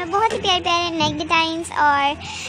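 A high-pitched voice singing a melody in long held, wavering notes.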